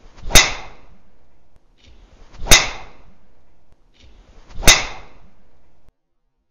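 Three golf driver shots about two seconds apart: each a short swish of the club followed by a sharp crack as the driver head strikes the ball, with a brief ringing tail that cuts off suddenly.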